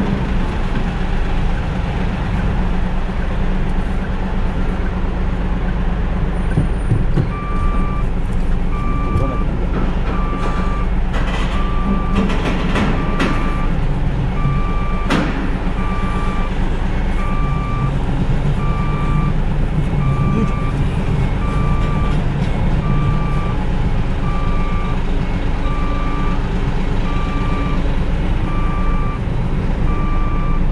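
Truck diesel engine running with a reversing alarm beeping about once a second, starting about seven seconds in as the container tractor-trailer backs up. There is one sharp snap about halfway through.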